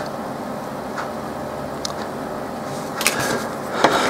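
Steady background noise with a few faint ticks, then a short clatter of light metal clicks about three seconds in as the solder wire is set down and steel tweezers are picked up from the bench.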